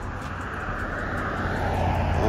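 Road traffic: a motor vehicle passing on the street, a steady rushing drone with a low rumble that slowly grows louder as it approaches.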